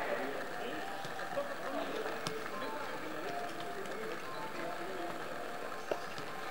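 Indistinct voices of people talking at a distance over a steady background hiss, with no clear words.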